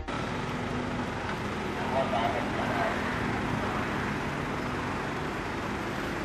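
Steady street background noise: a traffic hum with faint, indistinct voices.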